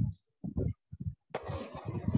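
A few short voice murmurs, then a steady hiss of room noise that starts abruptly about a second and a half in, as another participant's microphone opens on the video call.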